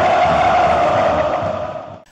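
Large crowd of football fans chanting in unison, fading out near the end.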